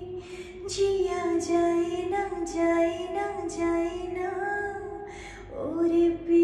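A woman singing a Hindi film song solo into a close microphone, holding long, gently bending notes with crisp 's'-like consonants between them. Near the end the voice dips and slides up into a new held note.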